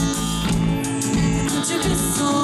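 Live band music, a trumpet among the instruments.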